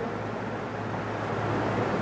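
Steady background hiss with a low, even hum.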